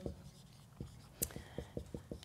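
Dry-erase marker writing on a whiteboard: a run of short, faint strokes.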